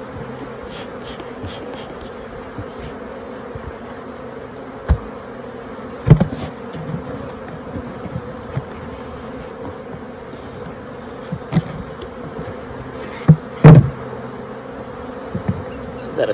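Honey bees humming steadily around an open hive, with a few sharp knocks from the hive lid and boxes being handled. The loudest are a pair of knocks close together late on.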